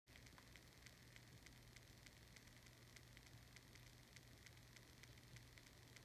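Near silence: room tone with a low steady hum and faint, evenly spaced ticking, several ticks a second.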